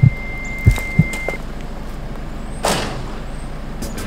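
A car's idling engine rumbles steadily, heard from inside the cabin. A thin, steady high tone sounds for about the first second and a half, with a few short low thumps in the first second and a brief rush of noise about two and a half seconds in.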